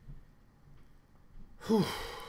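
Quiet room tone, then about one and a half seconds in a man lets out a breathy 'whew', a voiced sigh that trails off into a hiss of breath.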